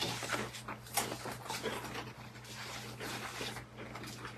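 Matzah cracker being chewed, a run of irregular short crunches, over a steady low electrical hum.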